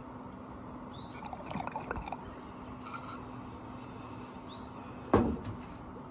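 Glass bong water bubbling in short irregular pops about a second in, then a single sharp knock near the end, over a steady low hum.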